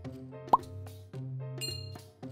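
Soft background music with a cartoon 'plop' sound effect, a short upward pitch glide, about half a second in, then a brief high chime near the end.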